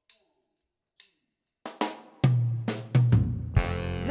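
A funk brass band starting up: two faint clicks a second apart, then a drum kit comes in with snare, bass drum and cymbals, joined by a low steady bass note and, near the end, horns playing sliding notes.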